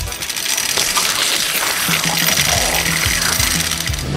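Hand-cranked meat grinder being turned to grind a chewy fruit roll-up candy into bite-sized pieces: a steady mechanical grinding noise, with background music that comes in about halfway.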